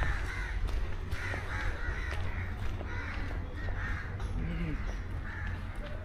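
Birds calling over and over, two or three short calls a second, over a steady low rumble.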